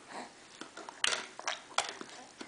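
Baby's mouth sounds while eating pureed prunes from a spoon: a few short, wet smacks and sniffs, the loudest about a second in and two more in the second half.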